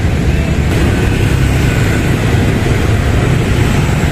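Steady low rumble of street traffic noise, with no distinct events.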